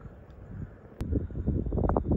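Wind buffeting the microphone outdoors, faint at first. About a second in a sharp click marks a cut in the recording, after which the wind rumble and rustling are louder.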